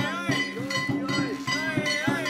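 Festival float music: a small metal bell or gong struck at a quick, even beat of about four strokes a second, ringing over drum beats, with pitched parts sliding up and down above it.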